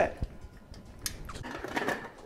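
Pressure cooker lid being handled and lined up on the pot: a light knock, then a run of small metallic clicks and scrapes.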